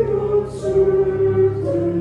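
A church choir singing a slow hymn in long held notes, with two soft 's' sounds of the words about half a second in and near the end.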